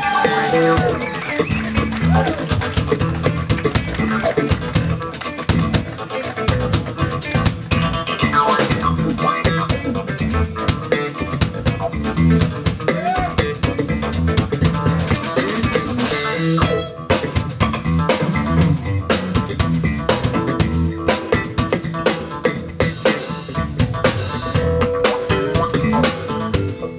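Live funk band playing an instrumental groove, with drum kit and electric guitar, the band dropping back briefly about seventeen seconds in.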